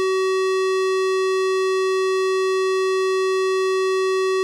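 Steady electronic censor tone: one unchanging, slightly buzzy pitch held without a break, covering the hidden scene.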